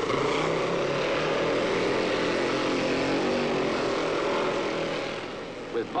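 Racing motorcycle engines running hard at speed. The pitch wavers and drops as they pass, then the sound dies away about five seconds in.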